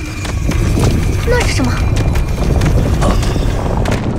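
Fight sound effects: rapid clattering knocks and heavy footfalls over a loud low rumble, with short vocal cries or grunts.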